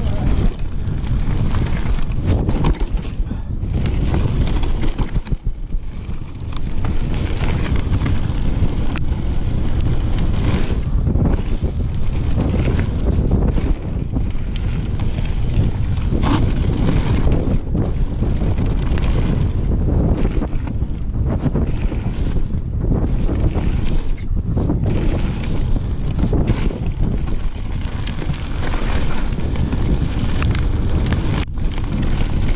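Mountain bike descending a loose gravel trail: wind buffeting the camera microphone over tyre noise on gravel, with frequent knocks and rattles from the bike over bumps.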